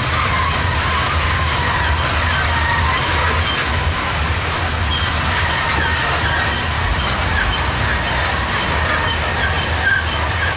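Loaded coal gondolas and hoppers of a freight train rolling past, a steady loud rumble and rattle of steel wheels on rail, with faint high-pitched wheel squeals now and then.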